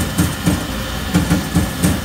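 Grinding machine sharpening an Amada turret punch die under coolant, running with a low pulse that repeats about three to four times a second over a steady hiss.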